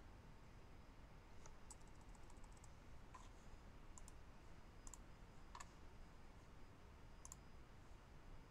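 Faint computer mouse clicks, a handful spaced about a second apart, with a short run of quick ticks about two seconds in, over quiet room tone.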